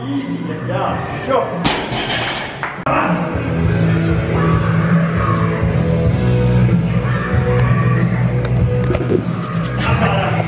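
Background music with long held low notes, growing fuller and louder about three seconds in.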